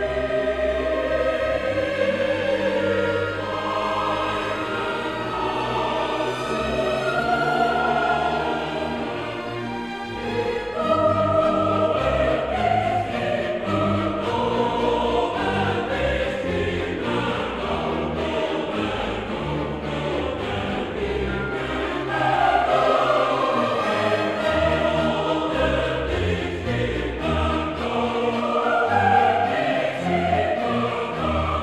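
Classical choral music: voices singing held, flowing lines over an orchestral accompaniment, with a brief lull about ten seconds in.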